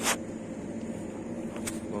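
A steady low hum with faint even tones, like a motor running, under a pause in a man's talk. A short breath-like noise comes at the very start and a brief click near the end.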